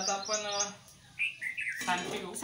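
A bird calling: a wavering call in the first second, then a few short falling chirps. A voice starts near the end.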